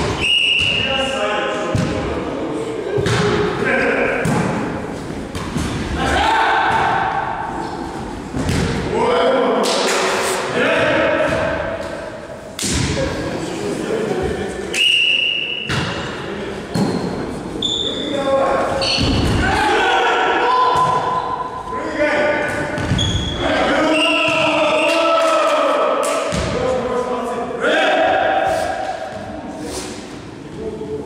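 Volleyball rally in a sports hall: the ball is struck again and again, giving sharp thuds that echo around the hall, with players shouting calls to each other between the hits.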